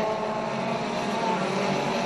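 A pack of four-cylinder mini stock race cars running together at race speed, their engines blending into one steady drone.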